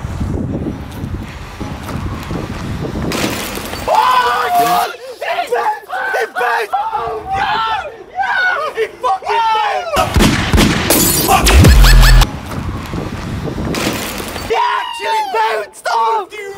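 Men yelling and whooping in excitement with no clear words, over a rushing outdoor background. About ten seconds in, a loud rushing, crackling burst hits the microphone and is the loudest sound, before the yelling starts again.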